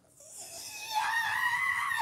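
A person screaming: a breathy cry that swells into a high, wavering scream about a second in, then breaks off.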